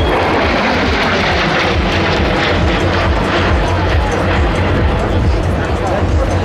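Twin jet engines of a Sukhoi Su-57 fighter (AL-41F1 turbofans) during a low aerobatic display, heard as loud, steady jet noise with a strong deep rumble that holds unchanged.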